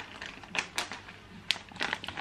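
Plastic snack wrapper crinkling as it is handled, a few sharp separate crackles and clicks spread through the moment.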